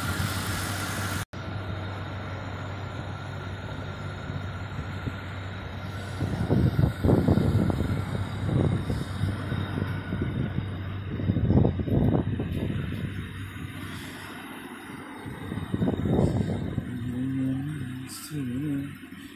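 2002 Ford Mustang's engine idling steadily, with a few louder rushes of low rumbling noise about six, twelve and sixteen seconds in.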